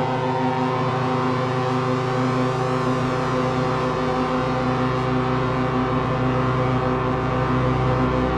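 Analog synthesizers playing a dense, sustained noise drone of several layered, steady tones, run through reverb and delay. A low bass drone comes in about three seconds in and swells toward the end.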